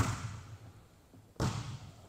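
Volleyball served overhand: a sharp smack of the hand on the ball, echoing in the gym hall, then about a second and a half later a second impact with its own echo, the ball landing on the far court.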